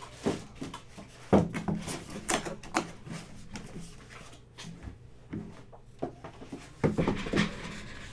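Handling sounds on a tabletop: a scattered string of knocks, taps and light rustles as items are moved about. The loudest knocks come about a second and a half in and again near the end, where a cardboard product box is set down.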